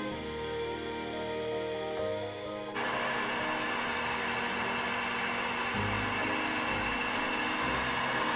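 Soft background music, then about a third of the way in the steady rushing blow of an electric heat gun running takes over suddenly.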